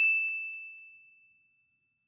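A single bright bell-like ding, struck once and ringing down to nothing over about a second and a half.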